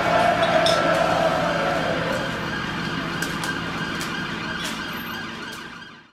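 Street traffic noise with a siren whose drawn-out tone dies away after about two seconds. A few short clicks follow, and the sound fades out at the very end.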